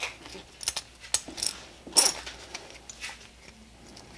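Hands working a nylon duty belt and its buckle hardware: a few short clicks and rustles of webbing, the loudest about two seconds in.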